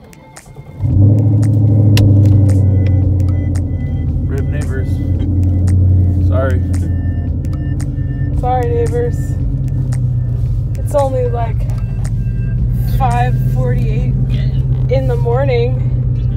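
A car engine starts about a second in with a loud flare, then settles into a steady low rumble as the car pulls away through the garage. From about four seconds in, a voice that sounds like singing comes in over the engine.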